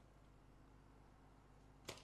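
Near silence over a low steady hum, then one sharp slap near the end: a hand spiking a beach volleyball at the net.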